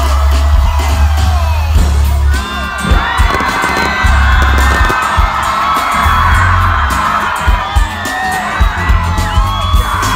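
A large concert crowd screaming and whooping, many voices sliding up and down at once, over music from the stage sound system with a deep held bass and sharp hits from about three seconds in.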